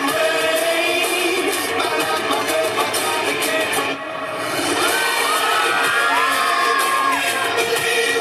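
Loud dance music with a crowd cheering and whooping over it. The sound dips briefly about halfway through, then the music and shouts pick up again.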